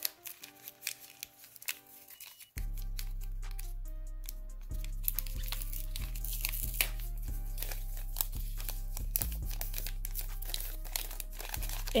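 Background music with a steady bass line that comes in suddenly about two and a half seconds in, over the crinkling of paper packaging being handled.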